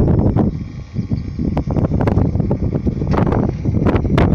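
Wind buffeting the microphone outdoors: a loud, uneven low rumble that rises and falls in gusts.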